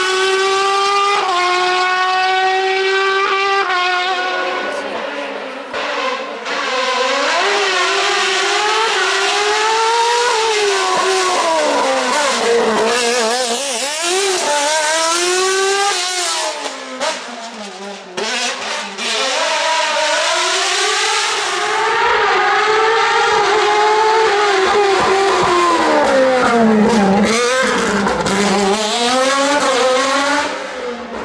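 Formula-style single-seater race car engine at full throttle, the pitch climbing and then dropping sharply at each upshift near the start. After that the revs rise and fall over and over as the car brakes and accelerates through a series of bends.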